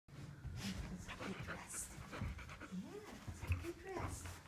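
A dog panting in quick repeated breaths.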